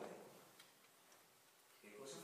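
Near silence: room tone in a pause between a man's sentences, his voice trailing off at the start and resuming near the end, with a couple of faint ticks.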